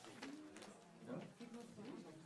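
Faint murmur of people talking among themselves in a hearing room, off-microphone.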